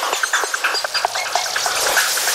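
Breakdown in an electronic trance track: the kick drum and bass drop out, leaving short scattered chirping synth blips over a high hissing wash.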